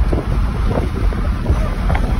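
Wind buffeting the microphone inside a moving car's cabin, coming in through an open window: a loud, low, rushing noise that doesn't let up.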